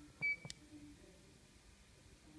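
Mettler Toledo ID7 scale terminal giving one short, high beep as its YES key is pressed to save the calibration, followed by a sharp click about half a second in.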